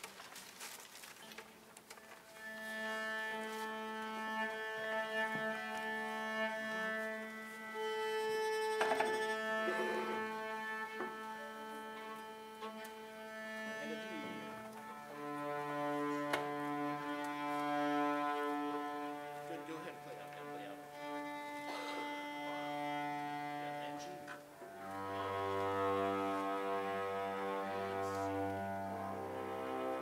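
Violins and cellos of a string ensemble tuning: long held open-string notes, one pitch for about thirteen seconds, then lower notes in turn. The lowest come in near the end, wavering as the strings are brought into tune.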